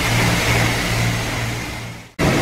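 High-pressure car-wash wand spraying water onto a car's lower side and wheel: a steady hiss of spray over a steady low hum, fading out near the end.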